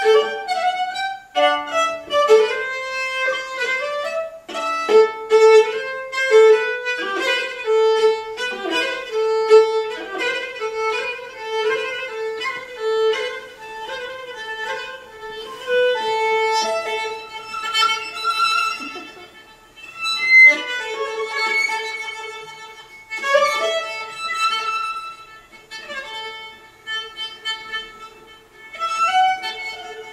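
Solo viola, bowed, playing a folk melody based on a traditional Danish wedding tune, with a lower note sounding steadily beneath the tune through much of it.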